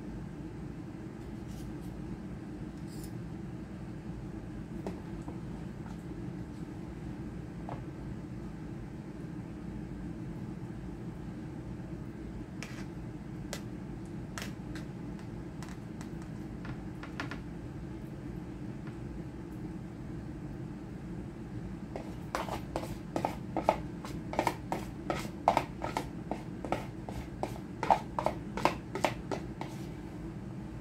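Metal spoons clicking now and then on a metal baking sheet as cookie dough is dropped, then, about two-thirds of the way through, a quick run of spoon scrapes and taps against a mixing bowl as dough is scooped out, the loudest sound. A steady low hum runs underneath.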